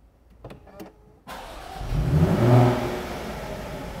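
2018 Jaguar F-Type's 3.0-litre supercharged V6 being started: a couple of faint clicks, then the engine cranks, catches and flares in a loud rev before settling to a steady idle.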